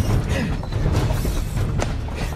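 Spinning reel being cranked hard against a heavy fish on a deeply bent rod, its mechanism giving a rapid run of clicks.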